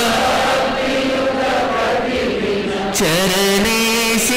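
A man's voice chanting a mantra in long held notes through a microphone and loudspeaker. About three seconds in the sound changes: the voice slides down and settles into steadier, clearer held tones.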